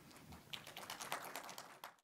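Faint scattered applause from a small audience: a light, irregular patter of claps that starts about half a second in.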